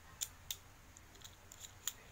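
A few short, sharp clicks of small plastic toy parts and packaging being handled, three of them louder and spread out.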